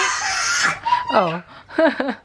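A woman exclaims "oh" and laughs in short bursts of falling pitch, after a brief hiss at the start.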